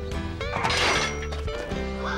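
Scene-change music cue with sustained pitched notes, and a noisy crash about half a second in that fades within the next second.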